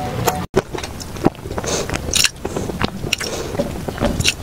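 Close-miked eating sounds: a run of sharp, crackly bites and chews, over a steady low rumble. A brief break comes about half a second in.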